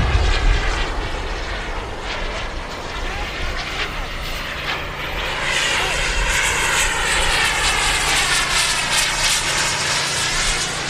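Radio-controlled model jet flying past with a steady jet whine, which swells louder about halfway through as the model comes closer.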